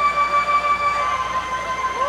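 The opening of a live band's song: one sustained held note that steps slightly lower about halfway through.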